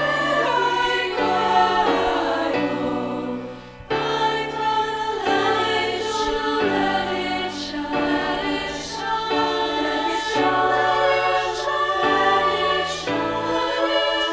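Virtual choir of women's voices singing sustained chords together, blended from separately recorded vocal parts. The sound briefly drops away just before four seconds in, then the singing comes back in.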